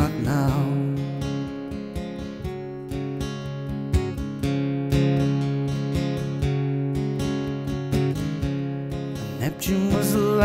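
Acoustic guitar strummed in a steady rhythm, chords ringing between strokes. The last sung note fades in the first second.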